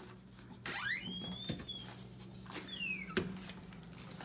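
A door hinge squeaking as the pantry door swings: one squeak rising in pitch to a held high note, then a falling squeak, and a sharp click a little after three seconds as the door latches. A steady low hum runs underneath.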